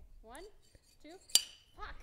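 A metal saber blade strikes the neck of a glass sparkling-wine bottle once, with a sharp clink and a short high ring about a second and a half in. It is a light tap on the glass before the bottle is sabered, not the stroke that opens it.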